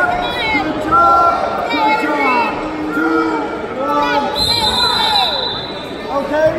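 Several voices shouting and calling out over one another in a large gym, with a steady high-pitched tone sounding for about a second and a half near the end.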